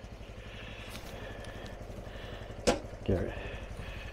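Honda Trail 125's air-cooled single-cylinder engine idling steadily, with one sharp click a little before three seconds in.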